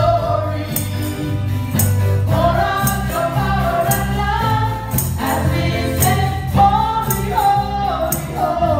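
Live gospel worship song: women singing lead into microphones over electric bass, electric guitar and drums, with percussion hits keeping a steady beat.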